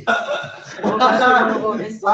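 Young men's voices, chuckling and talking loosely, with a louder stretch of voice about halfway through.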